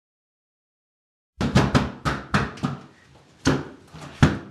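Knocking on a door: a quick, uneven run of about seven knocks, then one more knock near the end after a short pause.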